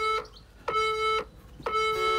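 Workout interval timer beeping the countdown at the end of a work set: even electronic beeps about a second apart, each lasting about half a second.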